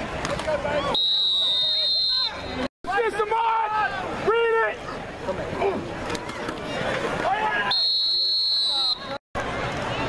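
Spectators' voices talking and shouting, with a referee's whistle blown twice, each a steady high blast of just over a second, about a second in and again near the end. The sound cuts out completely for a split second twice where the highlight clips are spliced.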